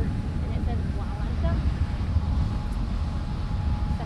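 Steady low rumble of the cargo ship McKeil Spirit's engine and propeller churning the water at close range while the ship manoeuvres through a turn, with a faint steady hum.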